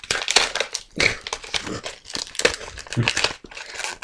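Gift wrapping being torn open and crumpled by hand, in irregular crinkly bursts; it is wrapped tightly with no loose edge to grip.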